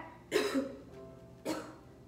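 A woman coughing twice, about a second apart, the first cough the louder, over soft instrumental background music.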